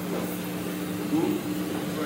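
Steady low hum from stage amplifiers between songs, two held tones with no playing, and a faint voice briefly about a second in.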